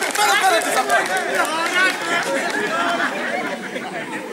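Speech only: voices talking throughout, with overlapping chatter.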